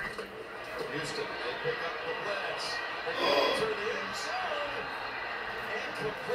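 Speech: a man talking, with a televised football broadcast playing in the room.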